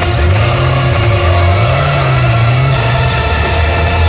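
Soundtrack of a short street-scene video clip played loudly over a hall's speakers: a dense mix with a strong low tone that slides up and down in pitch.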